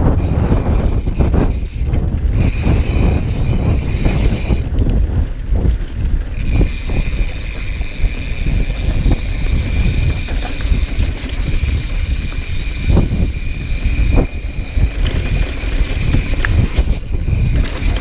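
Mountain bike descending a dirt trail at speed: wind buffeting the microphone over the rumble of tyres on loose dirt, with a few sharp knocks near the end as the bike rattles over bumps. A steady high whine joins from about six seconds in.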